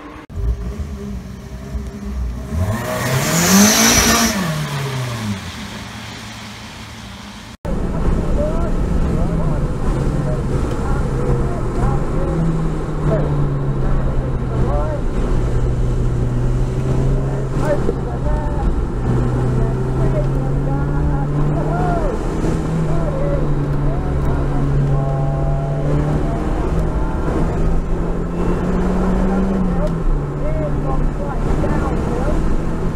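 A car passing by at speed in the first few seconds, its engine note rising and then falling as it goes past, with a hiss of spray from the wet track. After a sudden cut, the cabin of a Lotus Elise on a wet circuit: the engine runs at a steady note with dense road and tyre noise, and the pitch rises slightly near the end.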